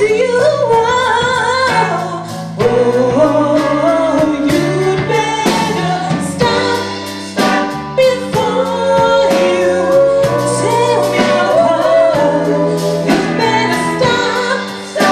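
A woman singing lead with a live band of keyboard, drums, electric guitar and cello, with backing singers joining in. Her voice holds one long note near the middle.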